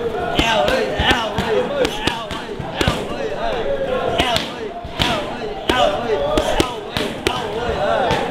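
Boxing gloves striking a trainer's hand-held pads during pad work: a string of sharp smacks at irregular intervals, with voices running underneath.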